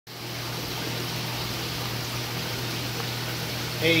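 Steady rushing of water circulating through a saltwater aquarium's plumbing, with a steady low hum underneath. A man's voice starts speaking right at the end.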